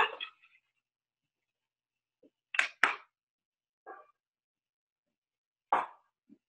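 A few short knocks and clatters with dead silence between them: two in quick succession a little before halfway, a fainter one, then another just before the end.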